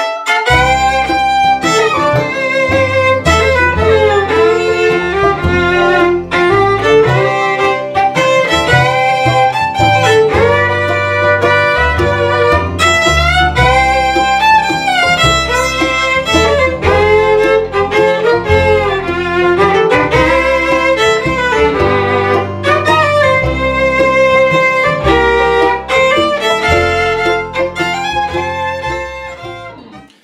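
Fiddle playing a lively melody over a backing with a bass line, without a break, fading out near the end.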